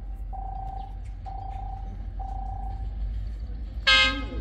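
An electronic railway warning tone sounding four times, about once a second, over the low rumble of an approaching diesel freight locomotive; just before the end the locomotive's horn blasts, the loudest sound.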